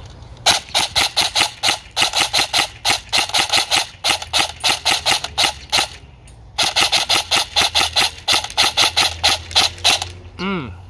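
EMG Salient Arms GRY airsoft electric M4 rifle with a G&P i5 gearbox firing rapid single shots on semi-auto, about four to five a second, each shot a sharp click of the gearbox cycling. There are two strings of shots with a short pause about six seconds in.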